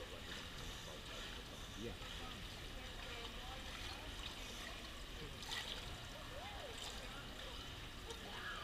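Quiet indoor swimming-pool hall: a steady background hum and water moving gently at the pool edge, with faint voices murmuring in the room. A short click sounds about five and a half seconds in.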